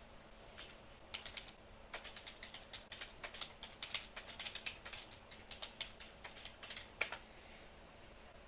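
Computer keyboard typing: irregular quick runs of faint keystrokes, with one louder click about seven seconds in.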